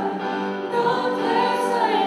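A live worship song: women's voices singing a slow, held melody, with acoustic guitar and a stage keyboard.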